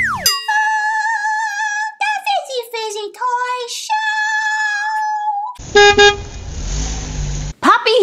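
Channel intro sting: a falling swoop, then a high, wavering voice holding long drawn-out notes that step up and down. About five and a half seconds in it gives way to a loud, harsh burst of noise lasting about two seconds.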